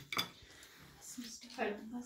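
Metal spoons clinking and scraping against plates and bowls during a meal: one sharp clink just after the start, then quieter knocks, with a faint murmur of voices in the second half.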